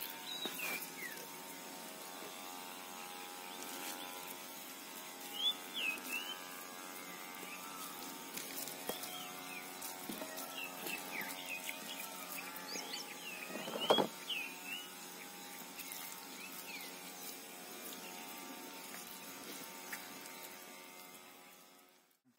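Soft background music of steady held tones, with birds chirping now and then over it; it fades out near the end.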